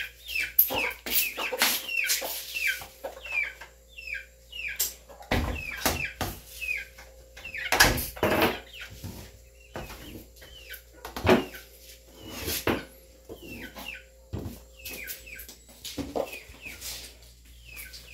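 Chickens calling over and over in short, high, falling notes. Several sharp knocks and clatters come from cooking pots being set down on a table.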